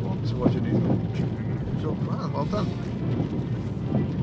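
Steady rumble of a car's engine and tyres on a wet road, heard from inside the cabin at about 20 mph.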